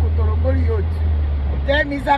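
A woman's voice talking inside a car, with the car's steady low hum underneath; the hum cuts off suddenly near the end.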